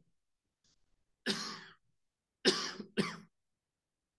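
A man coughing: a single cough about a second in, then two quick coughs close together.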